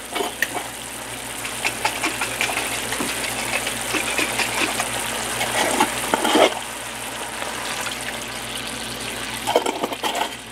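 Soy-and-hoisin sauce simmering at a rolling boil in a nonstick skillet: steady bubbling and sizzling full of small pops, briefly louder about six seconds in.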